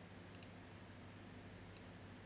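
Near silence: faint room tone with a low hum and two faint computer-mouse clicks, about half a second in and near the end.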